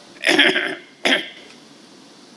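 An elderly man clearing his throat in a rough burst, then giving one short, sharp cough about a second in.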